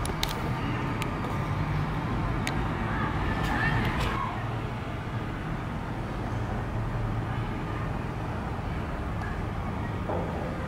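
Faint background voices in the first few seconds over a steady low rumble, with a few light clicks.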